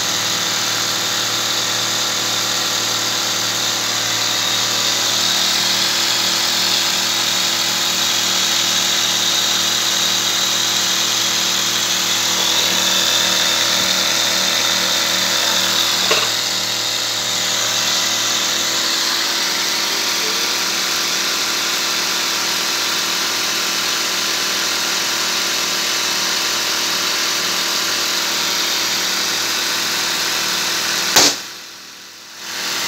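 Three small air compressors running together steadily: a 12-volt car tyre inflator, a nebulizer compressor and a vacuum sealer's mini pump, each blowing up a party balloon. A brief knock about halfway through.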